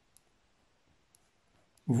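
A few faint ticks of a ballpoint pen writing on a textbook page; a man's voice starts near the end.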